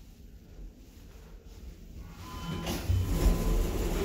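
Lift's two-speed sliding doors opening: after a quiet start, a low rumble begins about two seconds in and builds to the end.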